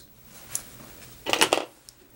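Small fly-tying scissors snipping off the tied-down craft cord close behind the hook's bead: a light click, then a louder, short snip a little over a second in, and a faint click near the end.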